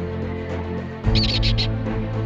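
Background music, with a quick run of four or five high, sharp kestrel calls about a second in, as the music changes.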